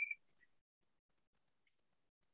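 Near silence, with a brief faint high-pitched squeak right at the start and a fainter one about half a second in.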